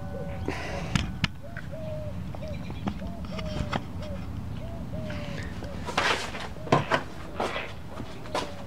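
A bird calling in a quick series of short, repeated notes over a steady low outdoor rumble. Louder rustling bursts follow near the end.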